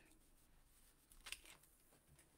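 Near silence: room tone, with a faint brief click or rustle a little past the middle.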